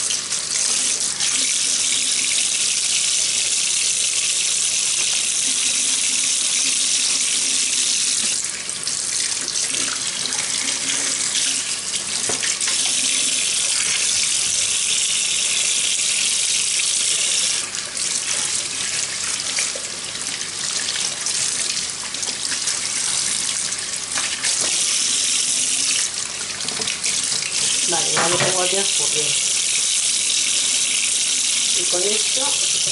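Kitchen tap running steadily into a stainless steel sink, the stream splashing over plastic parts being rinsed under it. Its sound briefly changes a few times as hands and parts move in and out of the stream.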